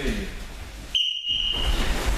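A single steady whistle blast, starting abruptly about a second in and held for just under a second, typical of a coach's signal to start or stop a drill.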